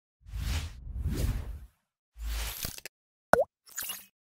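Animated logo intro sound effects: two long whooshes with a low rumble, a shorter low whoosh, then a sharp pop with a quick pitch bend down and back up, the loudest sound, about three seconds in. A brief high-pitched flourish follows near the end.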